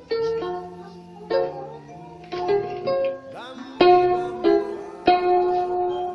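Instrumental music: a plucked string instrument picks out a slow melody of single notes, each struck sharply and left to ring, about ten notes over a steady low bass note.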